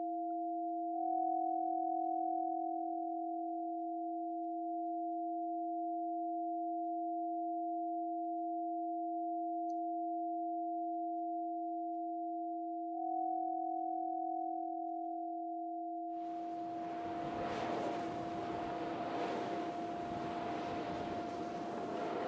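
A sustained electronic drone of two steady pure tones, a low one and a higher one held together, with the upper tone swelling slightly twice. About three-quarters of the way through, a rushing noise joins the drone and lasts to the end.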